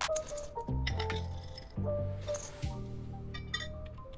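Background music, with a few light clinks of chocolate chips dropping into a stainless steel mixing bowl and a brief rustle just past halfway.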